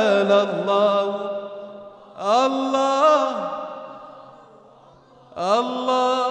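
Unaccompanied male voice singing an Arabic nasheed with no instruments. A sung phrase trails off, then two long held notes each swoop up into pitch, about two seconds in and again near the end, and fade slowly.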